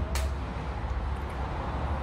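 Steady low background rumble of ambient noise, with one short click just after the start.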